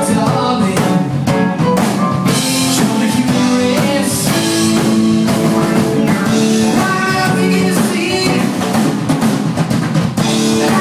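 Live rock band playing loud: two electric guitars, bass guitar and a drum kit.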